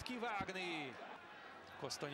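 Faint football-stadium sound between commentary lines: distant shouted calls whose pitch falls, with a short thud a little under half a second in.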